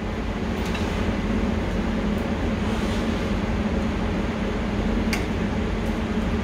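Steady hum and rush of an air-handling fan, with a single faint click about five seconds in.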